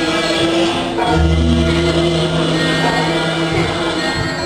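Javanese gamelan accompaniment for classical dance with voices singing together. A deep sustained low note comes in about a second in and rings for over two seconds.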